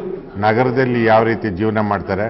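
A man speaking in Kannada, starting after a brief pause.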